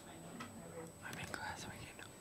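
Quiet whispered speech close to the microphone.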